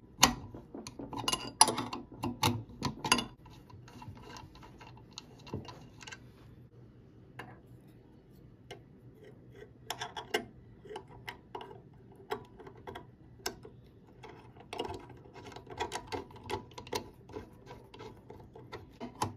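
Metal clicks and taps of a wrench and a steel bolt being worked on a turbocharger housing and its bracket. There is a dense run of sharp clicks in the first few seconds, then scattered ticks, then more clicks near the end.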